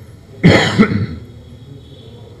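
A man coughing close to the microphone: two quick, loud coughs about a third of a second apart, roughly half a second in.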